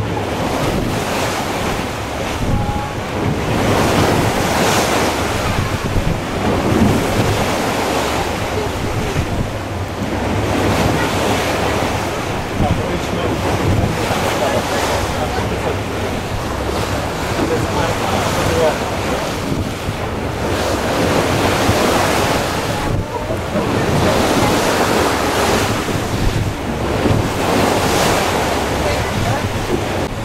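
Wind buffeting the microphone over the rushing wash of the open sea, swelling and easing in gusts every few seconds.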